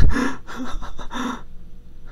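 A man laughing breathily: three short airy bursts of laughter in the first second and a half.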